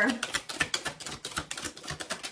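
Tarot deck being shuffled by hand: a quick, slightly uneven run of card clicks and slaps, several a second.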